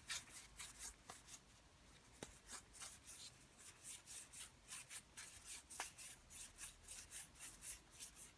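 Baseball cards being thumbed one at a time off a stack, each one sliding off the next with a faint papery flick, about three a second.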